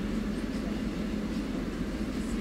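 Steady low room hum with a constant low tone, like a shop's air-conditioning running.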